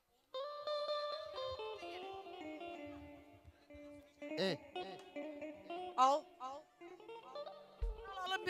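Electric guitar playing a slow, free-time melodic intro of long sustained notes that step down and up. A voice calls out briefly twice midway, and a drum comes in right at the end.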